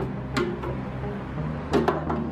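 Background music with sustained low notes, and two short sharp clicks, one about half a second in and one near the end.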